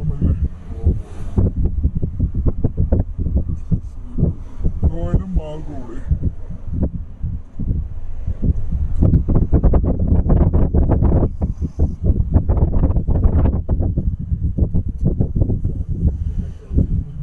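Voices talking inside a moving car's cabin over a steady low rumble of engine and road noise.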